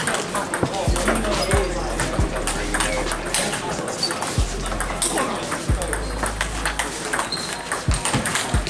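Table tennis rally: the celluloid ball is struck by the bats and bounces on the table in a quick run of sharp clicks, with more ball clicks and voices from other tables around the hall. A few low thuds come through underneath.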